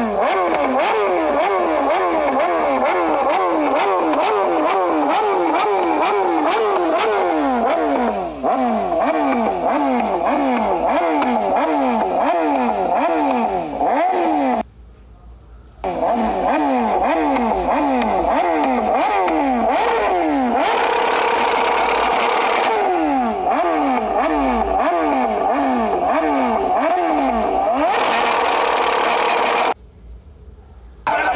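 BMW S1000RR inline-four sport-bike engine revved hard in quick repeated throttle blips, its pitch rising and falling about twice a second, with the exhaust shooting flames. The revving breaks off briefly about halfway and again near the end.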